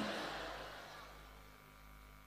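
A man's amplified voice dies away in reverberation over about a second. Then comes near silence with only a faint steady electrical hum from the sound system.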